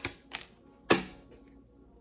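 Tarot cards being drawn and laid down on a table: three short sharp card slaps or snaps, the loudest a little under a second in.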